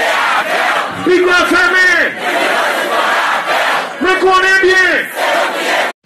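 Large concert crowd chanting and shouting together, loud and dense, with two surges of sung phrases about a second in and about four seconds in. The sound cuts off suddenly at the end.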